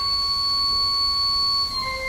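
1889 three-manual Father Willis pipe organ sounding a single high, pure-toned note held for nearly two seconds, moving to another note near the end.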